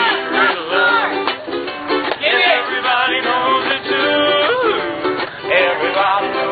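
Street musicians strumming ukuleles in a steady rhythmic chord pattern, with a wavering sung melody over it.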